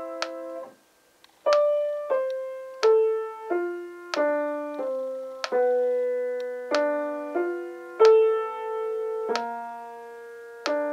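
Piano playing a slow, simple melody in two hands, one sustained note about every two-thirds of a second, after a short pause about a second in. A metronome clicks along at 46 beats per minute.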